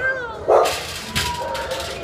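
Shelter dogs barking and yipping, with one loud bark about half a second in.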